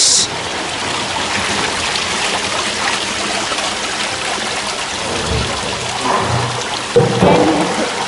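Tiled indoor fountain: water falling over a ledge and small jets splashing into the pool, a steady rushing splash. A brief louder low sound comes about seven seconds in.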